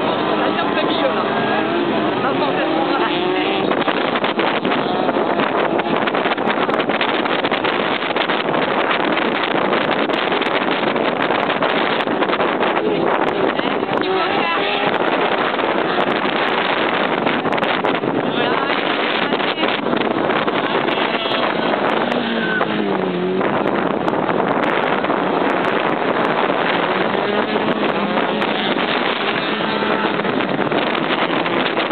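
Several autocross race cars' engines running hard and revving as they race on a dirt track, their pitch rising and falling through gear changes and corners.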